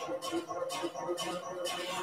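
Workout background music with a steady beat, about two beats a second.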